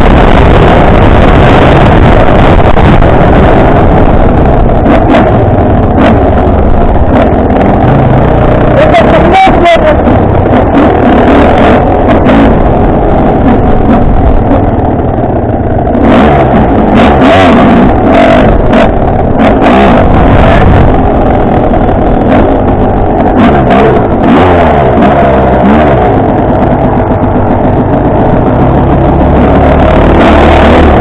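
Enduro dirt bike engine being ridden, its revs rising and falling with the throttle, very loud as picked up by a camera mounted on the bike. Knocks from the trail and wind on the microphone break in now and then.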